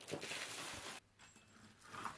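A loose stone being pulled out of a crumbling old rubble wall, grating against the decayed mortar as dust and grit fall away. It lasts about a second and stops abruptly.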